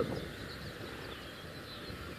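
Quiet outdoor background with a few faint, distant bird chirps over a low steady hiss.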